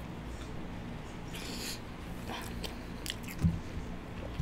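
A person chewing a mouthful of french fries, close to the microphone, with wet mouth clicks. A short breathy hiss comes about one and a half seconds in, and a low thump near the end.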